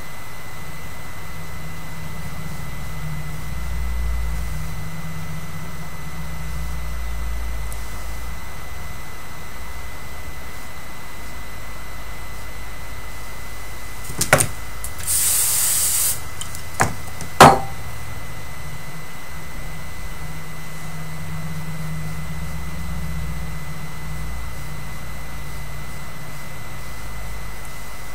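Steady low room hum with a faint high whine. About halfway through comes a click, then a hiss lasting about a second, then two sharp clicks, the second the loudest, from handling while hands work the hair.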